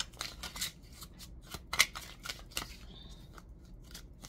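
A deck of oracle cards being shuffled by hand: a run of irregular crisp clicks and snaps as the cards slap together, the loudest a little under two seconds in.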